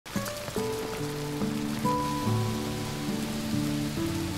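Steady rain falling into a puddle, with slow background music of long held notes over it.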